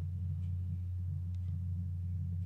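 Steady low electrical hum in the recording, unchanging throughout.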